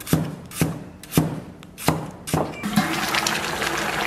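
Chinese cleaver chopping a potato into chunks on a wooden chopping board: five sharp strikes about half a second apart. About two-thirds of the way in, these give way to a steady bubbling of braised beef ribs simmering in sauce in a pot.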